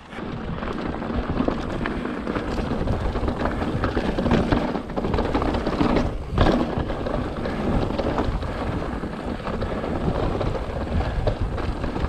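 Full-suspension mountain bike, a Fezzari La Sal Peak, riding over a rocky dirt and slickrock trail. It makes a continuous rough rumble of tyres on rock, broken by many small clatters. The noise comes up sharply at the start, with a hard jolt a little past the middle as the bike drops over a rock ledge.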